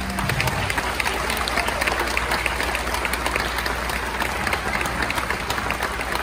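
Audience applauding steadily as a school band's final piece ends, with the band's last held note dying away in the first moment.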